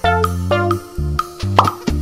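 Light, bouncy background music for a children's cartoon, with a steady bass line under short plucked notes. About one and a half seconds in, a quick rising cartoon pop effect sounds.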